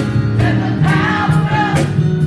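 Small choir of girls and women singing a gospel song, with a sharp percussive beat about twice a second.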